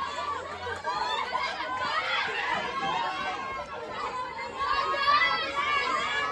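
Chatter of many overlapping voices, several people talking at once.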